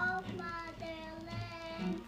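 A young boy singing a slow school song in long held notes, with loose strums on a nylon-string classical guitar underneath.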